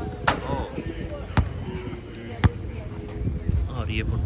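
A ball bounced three times on hard paving, three sharp smacks about a second apart, with people talking around it.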